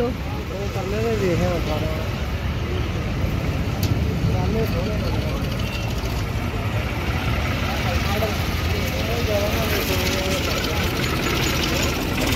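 Steady low rumble of vehicle engines, with people talking in the background.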